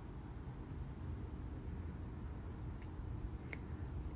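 Quiet room tone with a low steady hum, and two faint short ticks in the second half.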